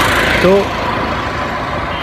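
Road traffic noise from a vehicle passing close by: a steady rushing noise, loudest in the first half second, then easing slightly.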